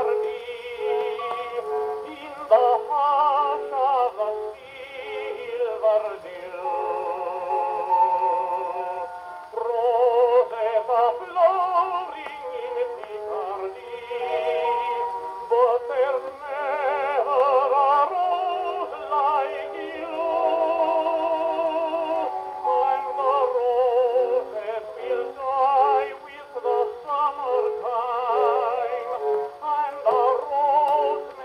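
A 78 rpm Gennett shellac record of a tenor's song with orchestra playing on a wind-up HMV 102 portable gramophone. The music comes through the machine's own horn, thin and narrow, with no bass.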